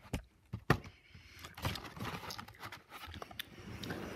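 Close handling noise: a few sharp knocks in the first second, then rough rustling and rubbing for a couple of seconds.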